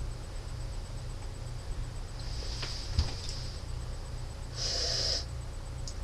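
A person sniffing the aroma of a glass of beer through the nose: a faint sniff about two seconds in and one stronger sniff about a second before the end, over a steady low hum.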